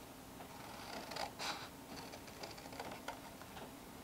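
Scissors cutting through a printed paper sheet: faint, irregular snips and paper rustling.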